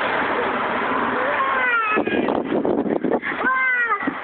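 A small child's wordless high-pitched vocalizations: short falling squeals about halfway through and a longer rising-then-falling cry near the end, over a steady rushing background noise.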